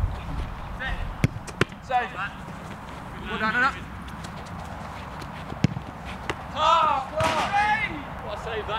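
Sharp thuds of a football being struck and handled, three in all, among short shouts.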